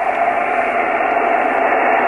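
Steady static hiss from a Yaesu FT-857D transceiver's speaker receiving single sideband on the 10-metre band, held to a narrow voice band and carrying a faint steady tone: an open receiver with no one talking between transmissions.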